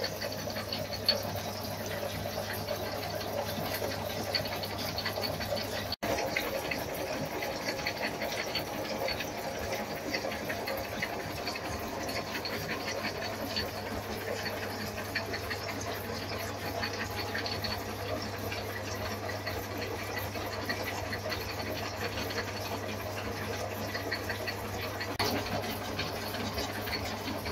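Sterke Arm metal shaper running, its ram stroking back and forth as the tool cuts steel angle iron, over a steady motor hum with a fine ticking of the cut. It runs at a faster stroke speed with a newly swapped tool. The sound briefly cuts out about six seconds in.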